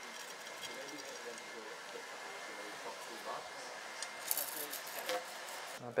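Quiet workshop room tone with faint background voices, and a brief rustle of a paper towel about four seconds in as excess glue is wiped from a freshly glued wedge head.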